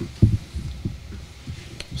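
A few dull low thumps, as of something knocking against a table or microphone. The first, about a quarter second in, is the loudest, and weaker ones follow irregularly, with a faint click near the end.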